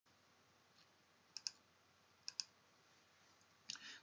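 Near silence: faint room tone with two quick double clicks, one about a second and a half in and the next just past two seconds.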